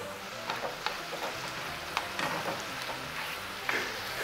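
Shrimp sizzling in butter in a skillet while being stirred, with a utensil ticking and scraping against the pan now and then.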